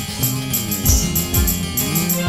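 Instrumental interlude from a live stage band: electronic keyboard melody with sliding notes over a drum kit keeping a steady beat with cymbals.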